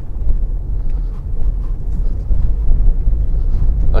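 Steady low rumble of a car driving slowly, heard from inside the cabin: engine and tyres on a rough road surface.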